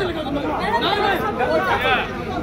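Several people talking over one another.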